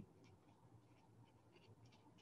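Near silence, with a few faint scratchy dabs of a fine paintbrush laying acrylic paint onto the painting surface.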